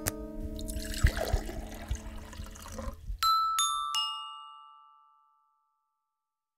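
A plucked-string chord dies away under rustling and a few sharp knocks, then stops. Three descending bell-like chime notes follow in quick succession and ring out as a closing jingle.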